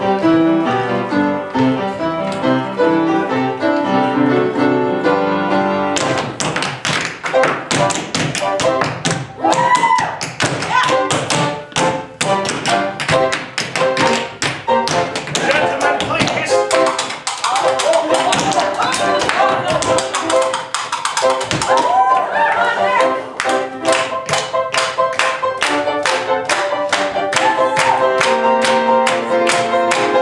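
Piano accompaniment for a stage dance number, then from about six seconds in a tap-dance break: fast, sharp taps of tap shoes on a wooden stage floor over the music.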